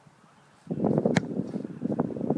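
A single sharp smack of a kicker's foot striking a football off a kicking tee, a little over a second in. It comes amid rough wind rumble on the microphone.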